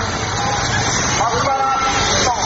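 Continuous rushing, rumbling noise of the tsunami surge and the debris it is crushing. People's voices call out over it about a second and a half in.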